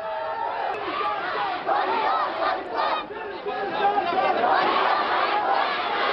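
A large crowd of men shouting slogans together, many voices overlapping, with a short dip about halfway before it grows louder again.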